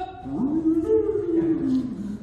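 A man's voice drawing out one long wordless exclamation in a raised pitch. It glides up, holds for about a second and sags slightly at the end.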